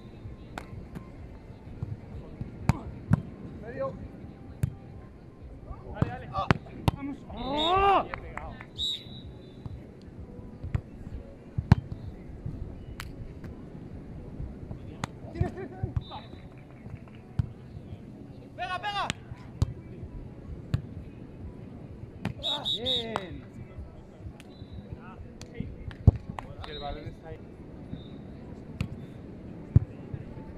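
Beach volleyball in play: sharp slaps of hands and forearms on the ball every few seconds, with players shouting several times, loudest about eight seconds in.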